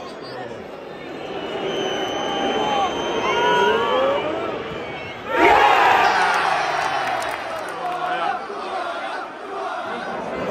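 Football stadium crowd building in noise as a penalty is taken, then a sudden loud roar of cheering about five seconds in as the penalty is scored, easing off slowly.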